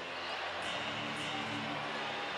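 Low background music with a few held low notes, over the steady background noise of a basketball arena during live play.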